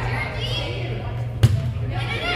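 A volleyball struck once, a single sharp thump about one and a half seconds in, ringing in a gym.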